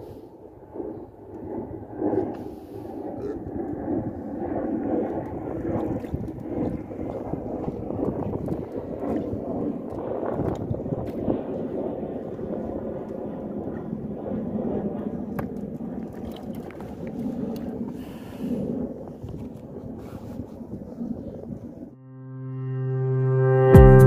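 Wind buffeting the microphone and water washing against a small wooden boat's hull at sea, a continuous uneven rumble with scattered knocks from handling in the boat.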